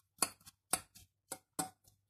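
A few short, crisp clicks, about four in two seconds, as fingers spread and break up partly frozen chopped spinach in a glass baking dish.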